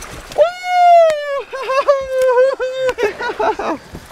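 A man's long, high-pitched whoop of triumph that slides slightly down in pitch, followed by a run of shorter yelps and a few sharp knocks.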